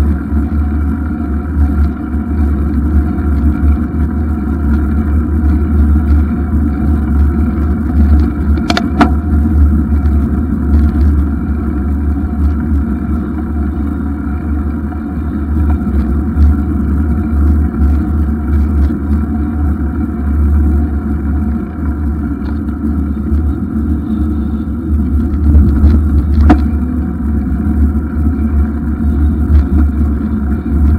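Loud, steady wind buffeting and tyre rumble on the microphone of a camera mounted on a moving bicycle. Two sharp knocks from the bike or its mount, about nine seconds in and again a few seconds before the end.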